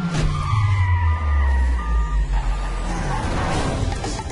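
Film car-chase sound: a car engine whose note falls steadily over the first two and a half seconds, with short high tones repeating about once a second behind it and a rushing noise near the end.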